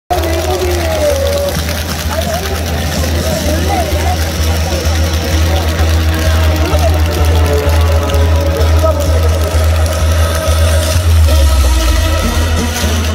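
Loud stadium PA music with a heavy, booming bass, and a crowd of fans' voices over it.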